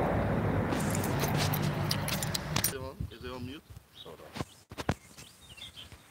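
A semi truck's diesel engine idling steadily, with keys jangling over it. About halfway through the engine sound drops away, leaving a short voice and a few clicks.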